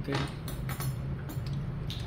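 A few light clicks of chopsticks and a spoon against ceramic bowls while eating, over a steady low hum.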